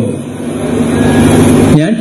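A steady, low background noise with a faint hum fills a short pause in a man's speech at a microphone. His voice comes back near the end.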